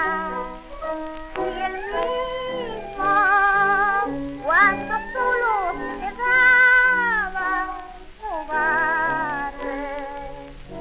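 A late-1920s tango recording playing a melody with wide pitch slides and vibrato over low accompaniment notes. There is a rising glide about halfway through and a long arching held note after it.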